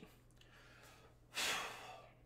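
A man exhales once, a breathy sigh lasting about half a second, beginning about one and a half seconds in.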